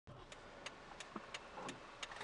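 Faint, even ticking inside a car's cabin, about three ticks a second, typical of a turn-signal indicator, over low cabin noise.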